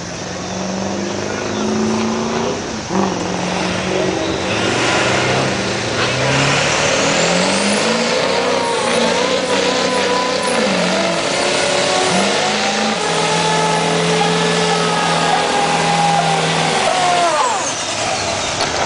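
Lifted diesel pickup doing a burnout: the engine is held at high revs that step up and down while the rear tyres spin on the pavement, a loud rising hiss of spinning tyres building over the first few seconds. The noise cuts off sharply near the end.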